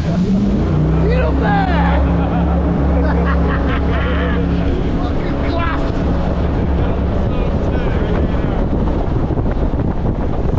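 Jet boat engine running hard at speed, with the rush of water spray and wind buffeting the microphone. The engine note is strongest and steadiest over the first half and eases somewhat after about five seconds.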